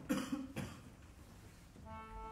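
A person coughing twice in quick succession in a quiet hall. Just before the end, a sustained instrumental note begins.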